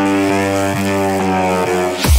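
Electronic dance music in a breakdown: a sustained, buzzy low synth drone with faint ticks about twice a second and no kick drum.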